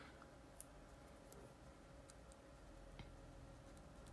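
Near silence: room tone, with two faint ticks.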